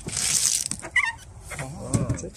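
Yellow-fleshed watermelon cracking and tearing apart as it is pried open by hand: a crisp, crackling split of rind and flesh for about half a second, then a short sharp snap about a second in.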